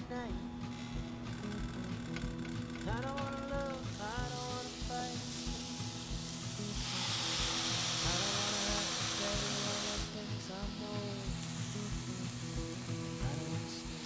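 Background music with a steady beat throughout. From about seven seconds in, ground-beef patties sizzle in a hot non-stick skillet for about three seconds as one is pressed flat with a spatula, then the sizzle drops back.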